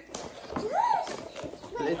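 A child's high wordless vocal sound, like an excited 'ooh', rising and then falling in pitch, with a couple of light knocks from the box being handled.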